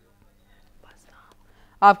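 A pause in a news reading: faint breathy noises at a low level, then the newsreader's voice comes in loudly near the end.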